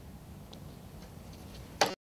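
Quiet stage room tone with a few faint ticks, then one short sharp clack near the end as a desk telephone's handset is put back down on its base after a call.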